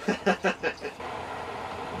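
Steady low hum and faint hiss from a lit gas stove heating a griddle, starting about a second in after a child's brief talk.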